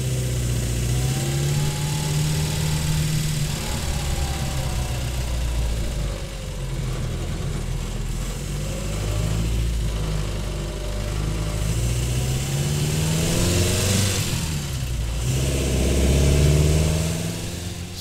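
Triumph TR3's four-cylinder engine running as the car is driven, its note climbing in pitch as it accelerates and dropping back between climbs, several times over.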